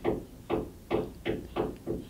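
A run of about five light knocks, evenly spaced at roughly two to three a second.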